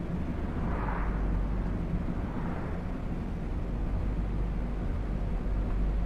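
Steady low rumble inside a moving car's cabin: engine and road noise heard from the back seat.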